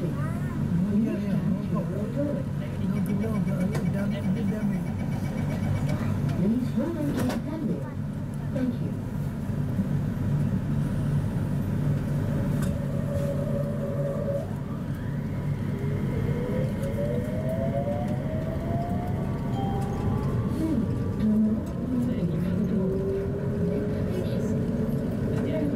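Interior of a Mitsubishi Crystal Mover light-rail car: passengers talk indistinctly while it stands at the platform. A steady tone sounds for about two seconds around halfway through. Then the electric traction motors whine, rising in pitch as the train pulls away and accelerates.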